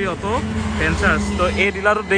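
Speech throughout, over a low steady rumble that fades near the end.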